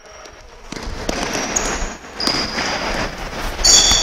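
Sneakers squeaking and feet thudding on a hardwood gym floor as basketball players run a drill, in an echoing hall. There are sharp, high squeaks about a second and a half in, again at two and a half seconds, and the loudest near the end.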